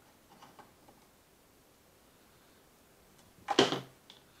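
Faint small clicks from multimeter probes and solenoid wires being handled, then a short, loud rush of noise near the end.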